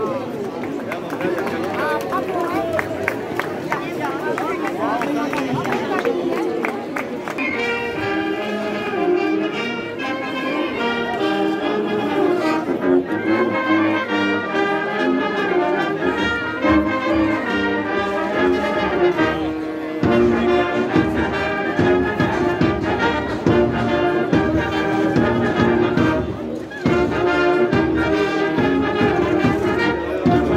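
Voices of the crowd in the stands, then a brass band starts playing about seven seconds in and carries on in a steady rhythm of sustained notes.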